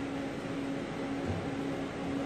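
Steady machine and air-handling hum with a low steady tone running through it, and a soft low bump near the middle.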